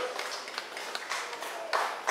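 Scattered hand clapping from a small crowd, with faint chatter underneath.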